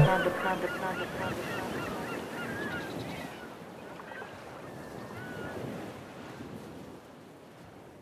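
Fading outro ambience after the song's beat cuts off: a soft noisy wash with short chirping calls over it, dying away to silence about seven seconds in.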